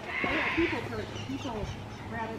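An animal call lasting about half a second near the start, over people talking in the background.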